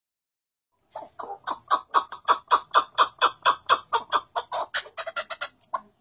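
White chukar partridge calling in its rapid rally call: a long run of repeated notes, about four to five a second, that builds up at first and then quickens into a softer, faster chatter near the end before stopping.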